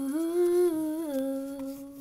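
A voice singing one long held note, the drawn-out last word "tube" of a sing-song chant of "hamster going through a tube". The pitch steps up a little just after the start and back down about a second in, and the note fades toward the end.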